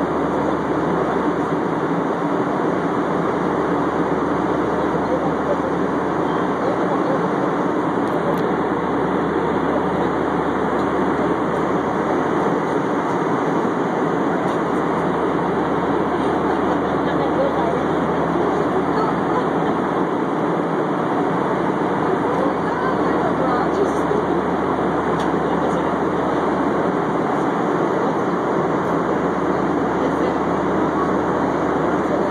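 Steady cabin noise of an airliner in flight: an even rush of air and engine noise heard from inside the passenger cabin.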